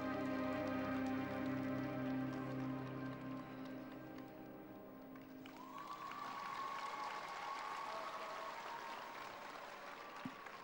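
Slow tango music holding its final chords and fading out about five seconds in. Then an arena audience applauds, with a long held tone running over the clapping.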